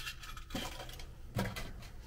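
Faint clicks and light handling noises from an acoustic guitar and pick as the hand comes to the strings, with two sharper ticks about half a second and a second and a half in; no strummed notes ring out.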